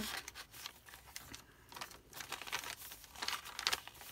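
Paper pages of a handmade journal rustling and crinkling as they are turned and handled by hand, in short scattered bursts that grow louder near the end.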